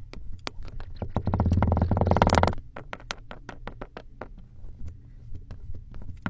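Thick white liquid poured from a bottle into a shot glass of dark chunks, with a loud gurgling burst of rapid pulses about a second in that lasts about a second and a half. Small crackling clicks come and go throughout.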